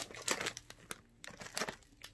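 Plastic snack bag of pretzel sticks crinkling as it is handled and lifted up, a run of irregular crackles.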